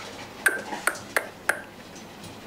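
Four sharp clicks about a third of a second apart, each with a brief ring.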